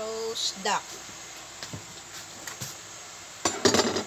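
Kitchen clatter near the end: a quick burst of knocks and rattles as utensils and a metal baking tray are handled on the counter, with a few faint taps before it.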